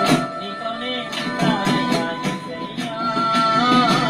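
A man singing a Telugu Christian gospel song over a steady rhythmic beat, holding a long note near the end.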